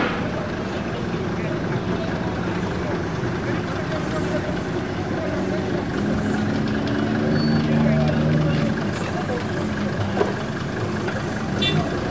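Steady running of vehicle engines and traffic, with voices of people talking in the background.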